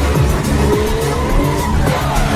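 A drifting car's engine revving up and down as it slides, with tyres squealing, over electronic background music with a steady beat.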